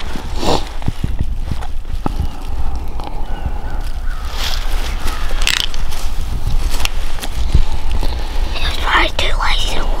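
Dry brush and leaf litter rustling and crackling as the camera is handled among dead branches, with a low rumble of handling or wind on the microphone. A hushed voice comes in near the end.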